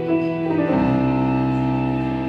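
Nord Stage keyboard playing live: a few single melody notes, then a full chord with deep bass notes entering under a second in and held.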